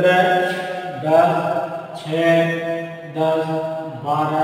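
A man's voice drawing out about four long, sing-song syllables of roughly a second each, each on a steady pitch, like a teacher calling out a column of numbers one by one.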